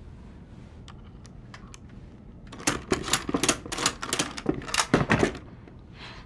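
Small hard objects being handled on a wooden workbench: a few separate clicks, then a rapid, loud run of clicking and clattering for about three seconds before it stops.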